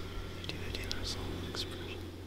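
Faint whispering from a person, with a few soft short sounds, over a steady low hum.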